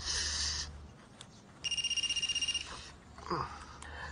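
Mobile phone ringing: an electronic trilling ring, one burst about a second long in the middle. At the start there is a short rustle of jacket fabric as a hand digs into the pocket for the phone.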